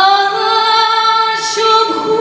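A woman singing solo into a microphone: she slides up into one long held note that changes pitch near the end.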